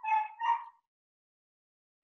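A border collie giving two short, high whines in quick succession, both within the first second.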